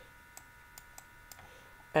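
A few faint, irregular clicks and taps of a stylus on a tablet screen as a digit is handwritten, over a steady faint electrical hum.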